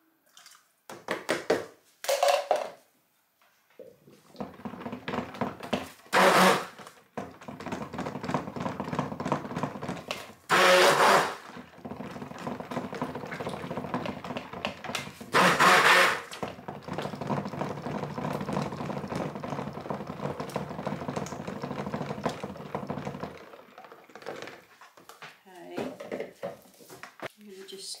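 Stick (immersion) blender running in a plastic bucket of cold-process soap batter for about twenty seconds, starting a few seconds in and cutting off near the end, with three short louder spells; it is blending in white colour to whiten the soap base. Before it, a few short knocks and scrapes as the colour is poured in.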